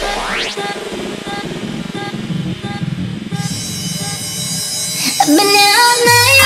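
Breakfunk DJ mix: a rising synth sweep peaks just after the start, then a pared-back section of short repeated notes over a low beat. A high hissing layer builds in about halfway, and a vocal line comes in near the end.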